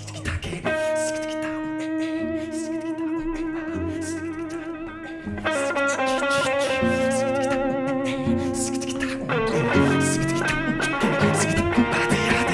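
Instrumental guitar duet of an acoustic guitar and an electric guitar. Long held electric-guitar notes waver with a wide vibrato over the accompaniment. A fuller passage with more notes comes in about halfway through, and pitches slide near the end.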